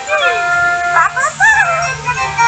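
Cartoon soundtrack: a high-pitched character voice swoops down, holds one long howl-like note, then wavers up and down. Background music runs underneath.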